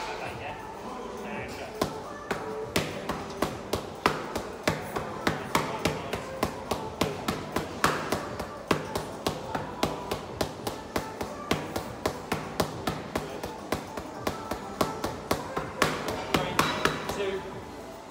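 Boxing gloves punching focus mitts: a fast run of sharp smacks, about three a second, starting about two seconds in and stopping near the end.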